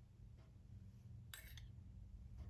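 Near silence over a low room hum, with a faint click and then a sharper short clink about a second and a half in: a metal spoon handling sauce against a small metal dish.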